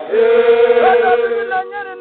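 Samburu traditional song sung unaccompanied by a group of voices: they hold one long note together while one voice slides up over it partway through, then break into shorter phrases near the end.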